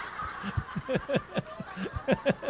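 Laughter: a run of short chuckles coming several times a second, in reaction to a joke.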